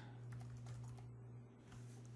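Faint typing on a computer keyboard: a few light keystrokes, mostly in the first second.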